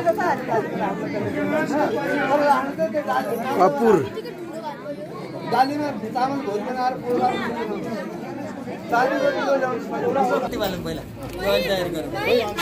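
People talking, several voices overlapping in indistinct conversation.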